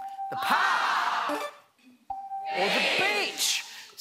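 Game-show answer board's reveal chime sounding twice, about two seconds apart, as the remaining answers are uncovered; each chime is followed by the studio audience reacting vocally.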